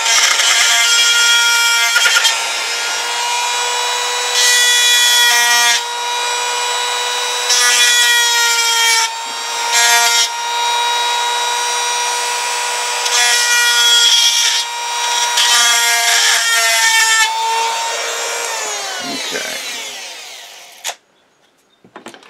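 Handheld rotary tool running steadily at high speed with an abrasive grinding point, whining, as it is pressed against the end of a motor shaft bearing bore in about five short grinding passes. This dresses the slightly mushroomed end of the bearing opening so the shaft slips back in. Near the end the motor winds down and stops.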